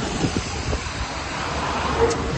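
Steady hiss of rain and wind around a tarp-covered truck, with a low rumble underneath.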